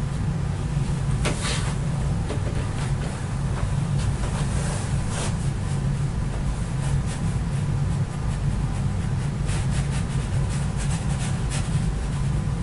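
Steady low background hum with a few faint, brief scratchy sounds.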